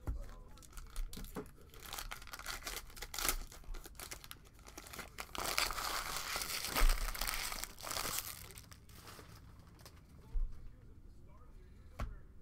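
Plastic cello-pack wrapper of a trading-card pack crinkling and tearing as it is pulled open by hand, in patches at first and loudest in a long stretch around the middle.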